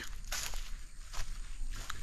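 A few scattered crunching footsteps on dry leaf and bark litter, the clearest about a third of a second in.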